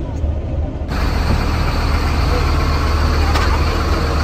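Steady low rumble of a bus engine. About a second in, a broad rush of noise joins it and holds.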